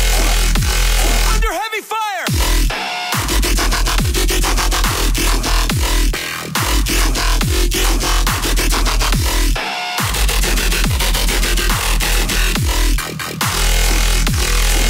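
Loud dubstep music played live by a DJ through a nightclub sound system. Heavy sub-bass runs under repeated falling pitch sweeps and fast drum hits. The bass drops out briefly about two seconds in and again near ten seconds.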